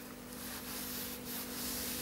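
Long satin gloves rubbing over nylon stockings and skirt fabric, a soft steady swishing that swells and eases, over a faint steady hum.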